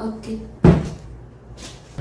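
A single sharp knock or bang about two thirds of a second in, the loudest sound here, like a door or cupboard being shut.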